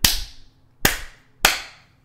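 Three slow, sharp hand claps, the last two closer together, each with a short ring in the room: a sarcastic slow clap.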